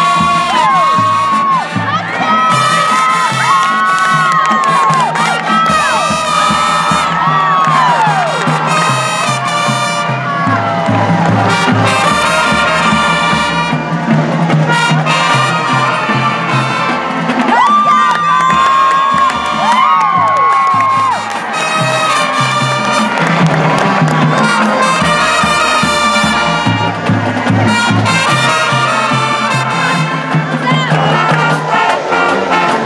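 High school marching band playing a brass tune, with sousaphones stepping through the bass line, over crowd cheering and shouting. High shouts rise over the band about a second in and again around eighteen seconds in.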